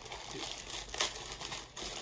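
Plastic poly mailer bag crinkling as it is handled and pulled open, with sharper crackles about a second in and again near the end.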